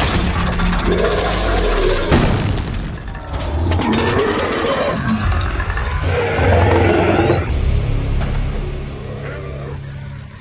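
Film battle soundtrack: a music score under heavy crashing, booming metal impacts and deep mechanical growls of giant robots, with a rising whine in the middle; it fades near the end.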